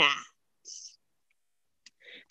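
The end of a woman's spoken cue, then a pause that is almost silent apart from a brief soft hiss and a faint click just before she speaks again.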